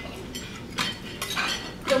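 Glassware and cutlery clinking: several short, sharp clinks in the second half.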